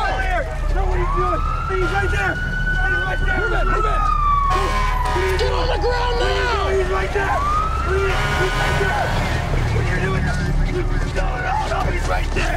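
Police car siren wailing in a slow sweep that rises, falls over several seconds, then rises again about seven seconds in.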